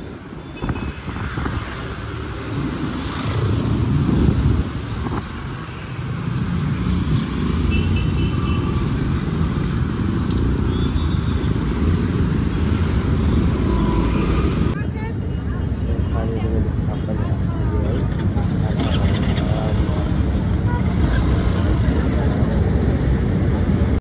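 Riding on a motorbike through busy city traffic: the bike's engine and heavy wind noise on the microphone, with other vehicles around. The sound changes abruptly about two-thirds of the way through.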